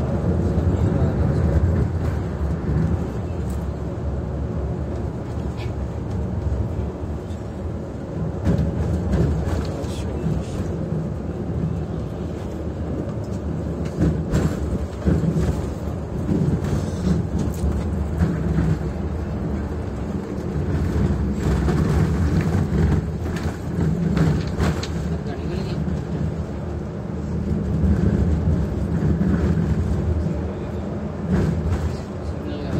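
Coach engine and road noise heard from inside the cab while driving at speed: a steady low drone, with voices faintly under it.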